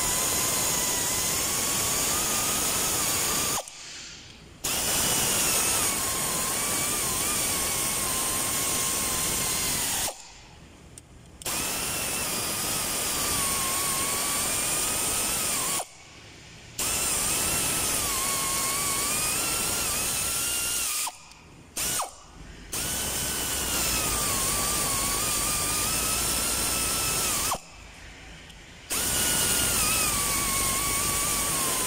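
A handheld power tool runs in repeated bursts of about five seconds, with short pauses between them, and its motor whine wavers in pitch as the trigger is worked.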